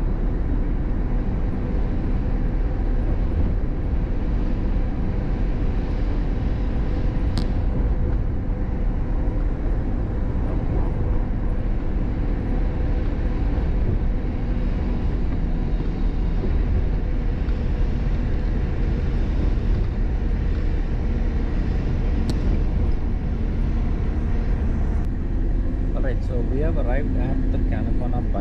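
Ashok Leyland sleeper coach at highway speed, heard from inside the driver's cabin: the engine and road noise make a steady low drone with a faint steady whine. Voices come in over it near the end.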